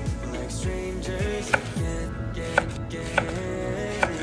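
A kitchen knife chopping leeks on a wooden cutting board: about four sharp chops roughly a second apart, starting about a second and a half in, over background music.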